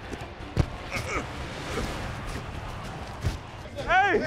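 A few sharp thumps and knocks from a microphone worn by a football player on the field, the loudest about half a second in and again near the end, over a steady low background with faint voices.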